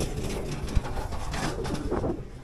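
Bicycle riding noise, with wind rumble on the microphone and tyres on asphalt. There is one sharp click a little under a second in, and a low cooing bird call near the end.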